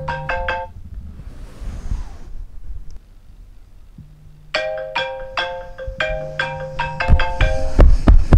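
A marimba-like phone alarm melody: short phrases of quick struck notes repeating over a low bass note. It breaks off less than a second in, with a brief soft rustle, and starts again about four and a half seconds in.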